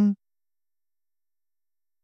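The end of a man's spoken word, then dead silence with no room tone.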